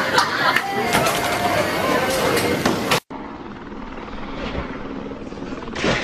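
Voices and bowling-alley din that cut off suddenly about three seconds in, followed by steady outdoor noise. Near the end come loud knocks as a car crashes off a road.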